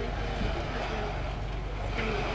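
Steady low hum inside a train carriage standing still, with no rail clatter, and faint voices murmuring in the background.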